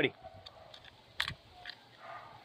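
One sharp metallic click a little past a second in, with a few fainter clicks before and after it: a small flat spanner turning and seating the bar-retaining nut on a mini cordless chainsaw as the bar is tightened.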